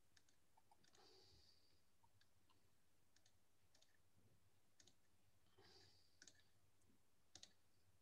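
Near silence: room tone with a few faint, short clicks, the clearest two coming late.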